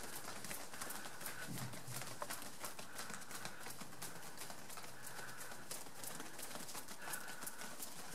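Massage percussion (tapotement): a line of people striking with their hands on the shoulders of the person in front, making a fast, steady patter of many light slaps on cloth-covered shoulders.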